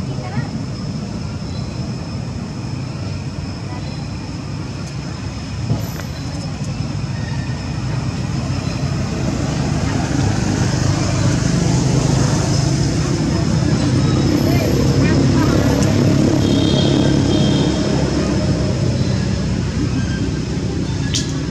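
Outdoor background of a low rumble like road traffic or a passing motor vehicle, growing louder from about eight seconds in and easing near the end, with a steady thin high tone and faint voices underneath.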